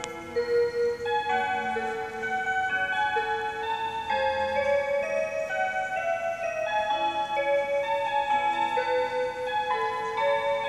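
Seiko motion wall clock playing one of its built-in hourly melodies to mark noon: a tune of held notes, several sounding together, changing about every half second.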